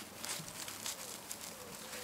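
Faint rustling and crinkling of a fine mesh insect-netting bag as it is handled and pulled off a fruit on the plant.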